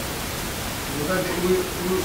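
Steady hiss with a faint, distant man's voice answering a question, starting about a second in.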